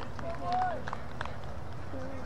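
Distant players' voices calling out across an open cricket field, one drawn-out call about half a second in, with a few faint clicks over a steady low rumble.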